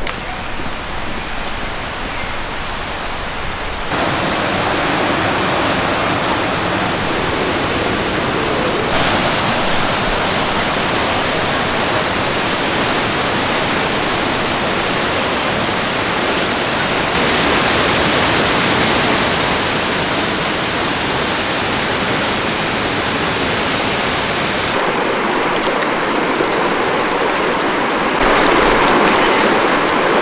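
Steady rush of a waterfall cascading over rock ledges. It is fainter for the first four seconds, then louder, with small jumps in level where the shots change.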